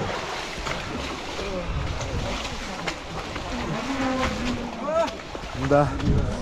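Feet wading and sloshing through shallow, icy stream water in a culvert, a steady wet rushing noise, with short voice calls over it from about four seconds in.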